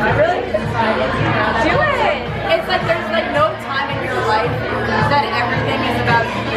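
Women's voices talking and chattering over background music with a steady beat, in a busy bar.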